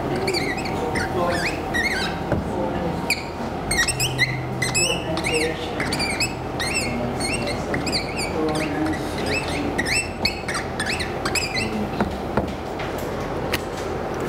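Felt-tip marker squeaking on a whiteboard in many short, quick strokes as words are written out letter by letter.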